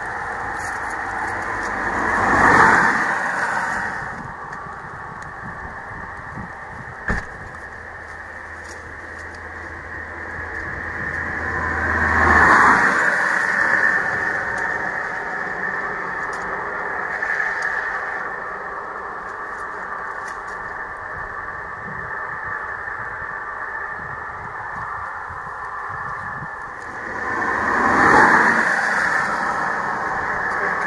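Steady outdoor background noise with passing vehicles: three times the sound swells up and fades away over a couple of seconds, near the start, midway and near the end. A single sharp click comes about seven seconds in.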